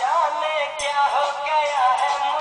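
A Bollywood film song playing: a high singing voice gliding up and down over the music.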